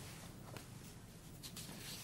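A few faint rustles of paper manuscript sheets being handled, over a low steady room hum.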